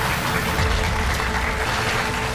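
Studio audience applauding steadily over background music.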